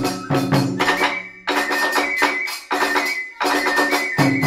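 Iwami kagura hayashi in the fast hachichōshi style: a large barrel drum (ōdō), a small drum and tebyōshi hand cymbals strike a quick, driving rhythm under a high held flute line. The big drum's low strokes stop for about two seconds in the middle while the cymbals and small drum keep going.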